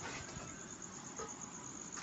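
Low background hiss with a steady, high-pitched, rapidly pulsing trill running throughout.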